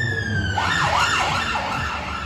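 Emergency vehicle siren: a slow wail, falling in pitch, that switches about half a second in to a fast yelp lasting about a second, over a low steady hum.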